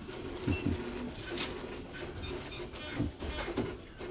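A small counter printer running at a service counter, mixed with scattered clicks and clatter of handling.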